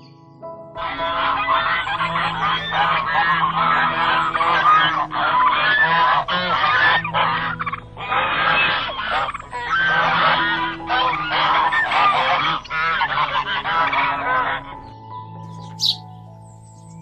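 A flock of domestic geese honking, many calls overlapping in a continuous clamour, over soft background music. The honking starts about a second in and stops about a second before the end.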